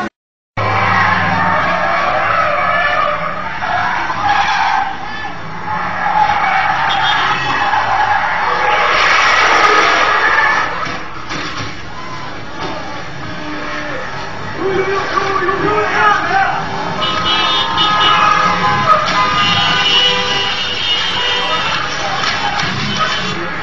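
Car drifting, its tyres skidding and squealing, mixed with music and voices. The sound drops out for about half a second right at the start.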